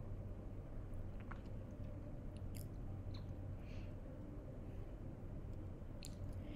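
Faint steady low hum with a few soft, scattered clicks.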